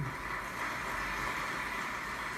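Studio audience applauding a correct answer, heard through a television speaker.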